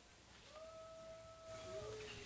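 Faint, drawn-out squeak of a chair's legs being dragged across a stage floor: one steady tone for over a second, then a shorter, lower one near the end.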